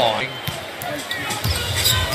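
A basketball bouncing on a hardwood court: a few separate thumps over arena noise.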